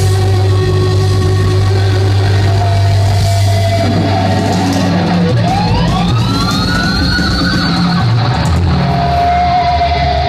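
Rock band playing live through amplifiers: a heavy, held low note for about five seconds, then several notes slide upward in pitch over the next few seconds, with drums and guitar continuing underneath.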